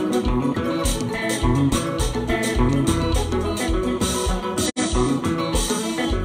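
Live konpa band playing: electric guitar over bass guitar, keyboard and drums, with a steady pulsing dance beat. The sound drops out for an instant about three-quarters of the way through.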